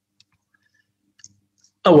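Near silence with a few faint clicks, then a man's voice starts speaking near the end.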